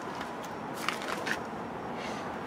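Steady outdoor background noise, with a few faint soft scuffs about a second in.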